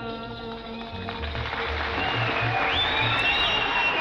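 A string orchestra plays the closing bars of an Egyptian song, a held chord in the first second giving way to low spaced notes, while audience applause and cheering swell in over the final seconds.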